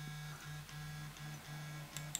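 A faint low hum that keeps breaking off and coming back every half second or so, with fainter thin tones above it.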